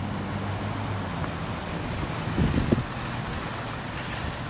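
Honda Magna motorcycle's V4 engine idling steadily, with a short louder burst a little past halfway.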